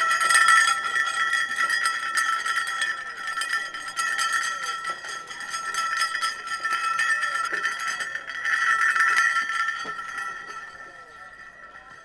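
An itinerant doctor's hand-shaken ring bell (a huchong, a hollow iron ring with loose balls inside) is rattled continuously. It gives a rapid jangling ring over a steady high tone, which fades out near the end. The sound serves as the wandering doctor's call for patients.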